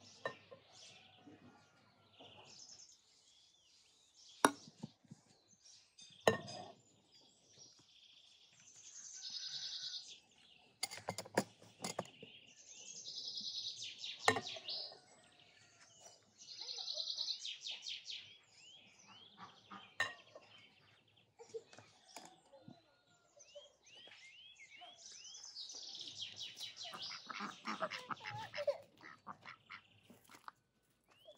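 A songbird repeats a high trilled song every few seconds. Sharp glass clinks come several times as glass dessert cups are set down on a metal tray.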